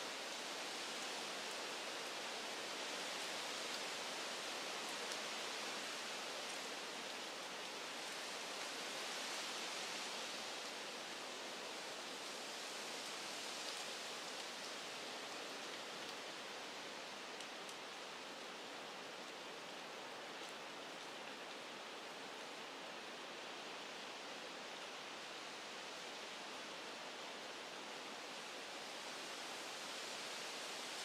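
Wind rustling through the leaves and branches of the woods, a steady hiss that swells and eases gently.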